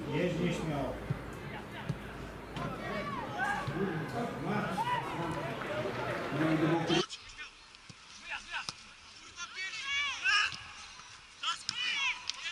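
Indistinct shouting and calling voices of footballers and spectators around a match, with a couple of sharp knocks. About seven seconds in the sound suddenly turns thin, losing its low end, and louder shouts stand out near the end.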